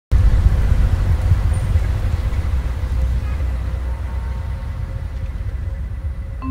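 Low, deep rumble of cinematic city ambience, like distant traffic, slowly fading.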